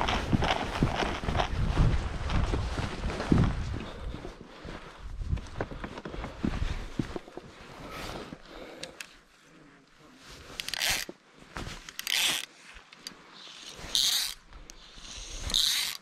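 Footsteps and clothing rustle on a rocky path for the first several seconds. Then come four short, separate, zipper-like rasps of fly line being pulled through the guides of a fly rod during casting.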